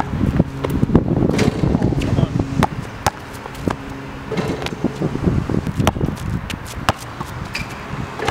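A basketball bouncing on an outdoor hard court and sneaker footsteps as a player dribbles and runs in to jump for a dunk, heard as a string of sharp knocks. A steady low hum runs underneath.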